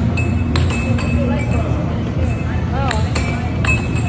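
Air hockey puck clacking against the plastic mallets and the table's rails: several sharp, irregular hits over arcade background music and chatter.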